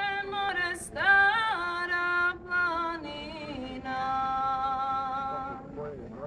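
A woman's voice singing long, held notes that slide up and down between pitches, with short breaks between phrases.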